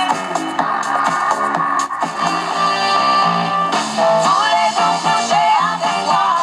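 Sony 8FC-65W clock radio playing a song off a broadcast station through its small built-in speaker: guitar music with little deep bass. A bending melody line comes in about four seconds in.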